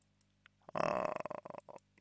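A short, rough throat noise from a man, under a second long, starting about two thirds of a second in, after a few faint clicks.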